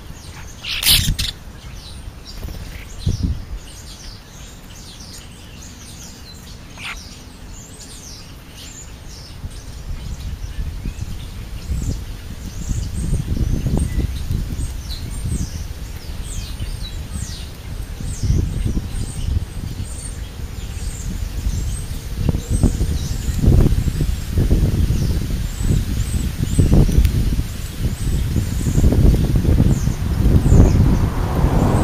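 Many short, high bird chirps and calls, coming thicker from about seven seconds in, over a low rumbling noise that grows louder through the second half. A single sharp knock about a second in.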